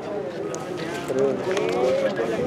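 Indistinct background voices of several people talking, with a few faint clicks.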